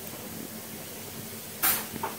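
A single brief rustle, about a third of a second long, comes about three-quarters of the way through as the clothing is handled. Otherwise there is only low, steady room noise.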